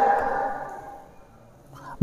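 A pause in a man's speech: the tail of his last word rings on and fades away over about a second, leaving low room tone until his voice comes back in near the end.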